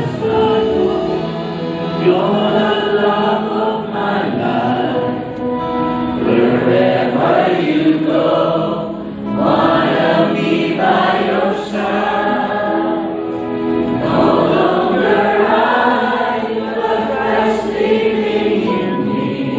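A congregation and praise team singing a worship song together, accompanied by a live band of guitars, bass and keyboard, in sustained sung phrases.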